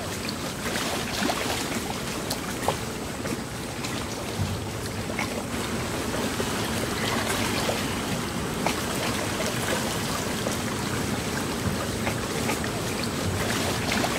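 Small waves lapping and splashing close by, with scattered little splashes, over the steady sound of a motorboat running out on the water.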